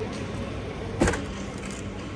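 Coffee-shop background noise: a steady low hum with a single sharp knock about a second in, after which a faint steady tone carries on.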